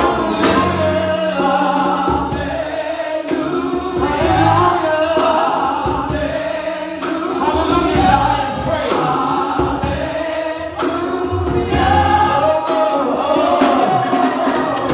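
Live gospel worship song: a male lead singer with female backing vocalists, over instrumental accompaniment with sustained low notes and a steady beat.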